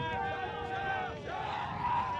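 Ultimate frisbee team's players cheering and shouting together, several voices overlapping, in celebration of a goal just scored.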